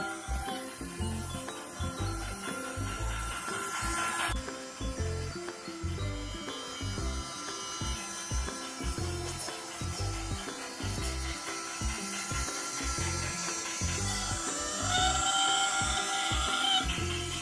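Battery-powered toy steam train running around a plastic track, its small motor and wheels giving a steady rubbing rattle, with music playing.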